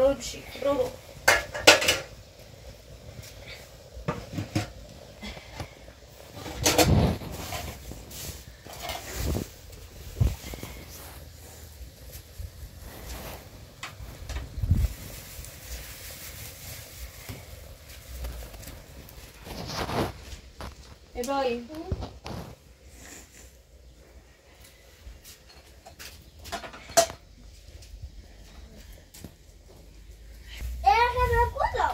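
Scattered clinks and knocks of dishes and pots being handled, coming at irregular intervals, with a couple of brief bits of speech.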